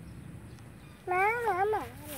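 A single short, high-pitched vocal call about a second in, wavering in pitch and then falling away.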